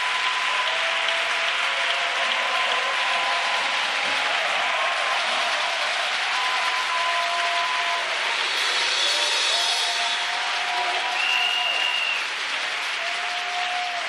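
A congregation clapping and applauding steadily for about fourteen seconds, with a few long held tones sounding over the clapping.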